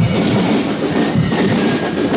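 Marching band music with drums and percussion, loud and continuous.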